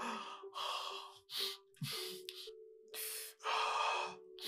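A man sobbing in a series of heavy, gasping breaths over soft, sustained background music.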